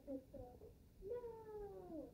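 Faint child's voice in the room, short sounds followed by one long falling drawn-out call.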